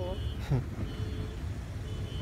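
Steady low rumble of motor vehicles, with faint high beeps repeating about once a second.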